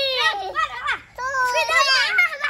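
Young children's high-pitched shouts and laughter during play, in two bursts.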